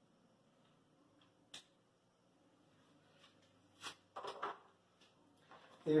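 Mostly quiet room with a single sharp click about a second and a half in, then a few short knocks and rustles near the end, as a marker is handled at a whiteboard.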